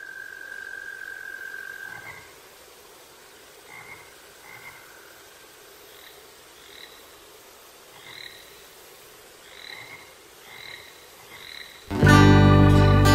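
Frogs calling: short croaking chirps repeated every half second to a second over a faint hiss, with a steady high tone holding for the first two seconds.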